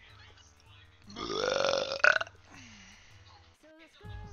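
A person's long, loud burp, lasting about a second and rising in pitch, with a sharp end.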